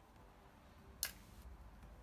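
A single sharp click with a brief hiss trailing after it, about a second in, against a quiet room.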